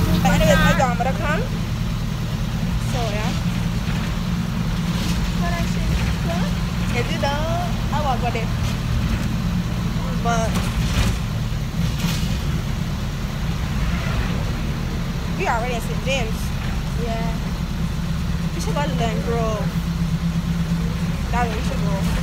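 Bus engine and road noise heard from inside the cabin of a moving bus: a steady low rumble throughout, with short bits of people's voices now and then.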